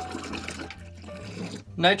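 Coffee pouring in a stream into a glass mason jar of cream liqueur, stopping near the end.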